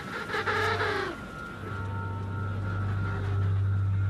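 An emperor penguin's mating call: one wavering, pitched call about a second long that drops in pitch at its end. A male advertising himself to females. A low steady drone continues after it.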